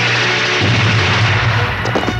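Soundtrack of an old black-and-white film: a dense, steady rushing noise with a low hum, and music underneath.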